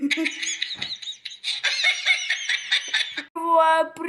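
A child's high-pitched giggling, quick repeated rising-and-falling laugh notes lasting about three seconds.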